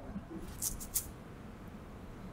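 Three short, high rustles in quick succession a little over half a second in, over faint low murmuring.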